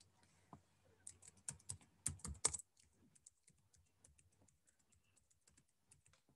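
Faint computer keyboard typing: a run of key clicks, louder and more spread out between about one and two and a half seconds in, then lighter, quicker taps.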